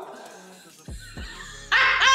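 Edited instant-replay sound effects: two quick falling swoops, then a sudden loud, high-pitched yelp near the end.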